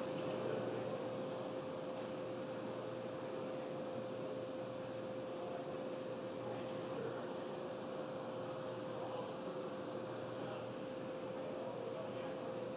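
Low, steady hiss with a faint steady tone running through it: the open background of a launch webcast's audio channel between commentary callouts.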